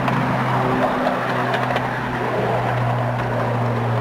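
A 10.25-inch gauge miniature railway train running, heard from a riding truck: a steady rumble of wheels on rail under a steady low hum, with a few faint ticks.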